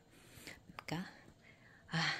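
Quiet room with only a brief, faint voice fragment and a small click about a second in.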